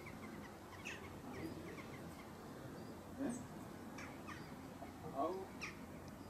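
Scattered short bird calls over a faint outdoor background, with a man's brief word near the end.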